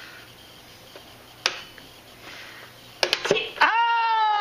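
Pie Face toy game: a single click from the crank, then a quick rattle of clicks as the spring-loaded arm flings the cream-topped hand up onto the player's face. It is followed near the end by a loud, long, steady shriek.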